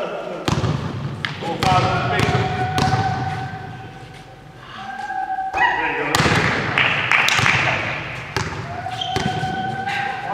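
Basketball bouncing on a sports-hall floor at the free-throw line, a series of sharp thuds, then a busier stretch of impacts and scuffling around the shot and rebound about six seconds in. Voices call out across the echoing hall.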